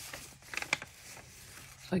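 Sheets of vintage sewing-pattern paper rustling as they are handled and lifted, with a brief cluster of light crinkles and ticks about half a second in.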